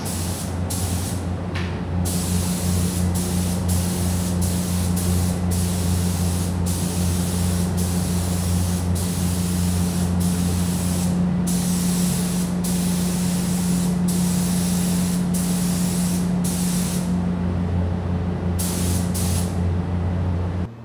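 Gravity-feed spray gun hissing as it sprays a candy-red coat onto a motorcycle fuel tank, the hiss breaking off briefly many times between passes. A steady low machine hum runs underneath.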